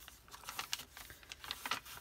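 Paper pages of a handmade journal being turned and handled by hand: a quiet series of light paper rustles and small taps.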